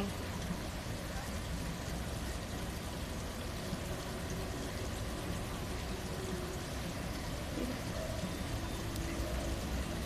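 Steady running and trickling of swimming-pool water, an even low hiss without breaks, with faint distant voices now and then.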